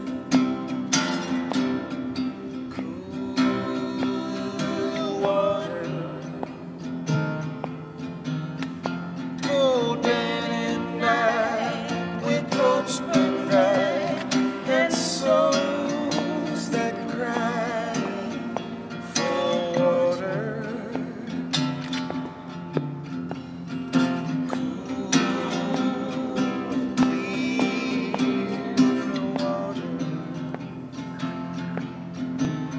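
Acoustic guitar strummed steadily through a simple three-chord country song, with a voice singing a wavering melody over it in several stretches.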